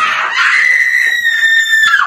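A woman screams in fright at being startled. The scream starts with a rough burst, then holds one high, shrill pitch for almost two seconds, sagging slightly before it cuts off.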